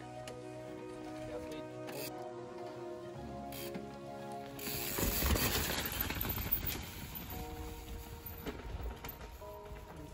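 A mountain bike coming down a wet dirt trail and passing close by from about five seconds in, its tyres on the mud and its freehub clicking, over steady background music.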